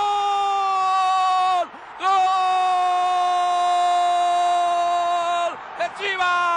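A sportscaster's drawn-out goal cry, a shouted "gooool" held on one high note. It breaks off once, a little under two seconds in, then holds again for about three and a half seconds, sagging slightly in pitch.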